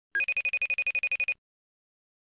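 Phone ringtone for an incoming call: a rapid electronic trill of even beeps, about ten a second, lasting just over a second and then stopping abruptly.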